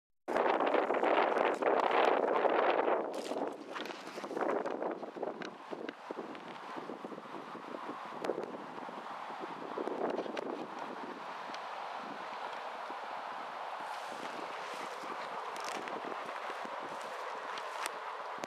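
Wind buffeting the microphone, loudest over the first three seconds and then settling to a softer, steady rush. Short crackles of dry grass and twigs are scattered through it.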